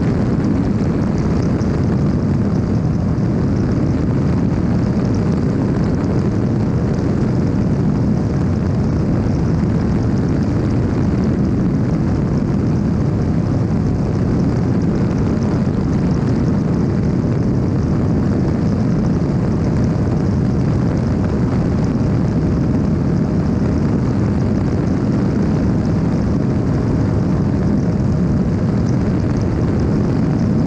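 Evolution Revo weight-shift ultralight trike in cruise flight: the steady, even drone of its pusher engine and propeller mixed with rushing wind. It does not change in pitch or level throughout.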